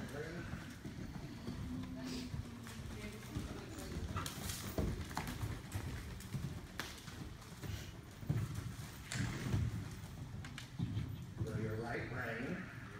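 Hoofbeats of a horse cantering on sand arena footing, an uneven series of dull thuds with a few sharper knocks.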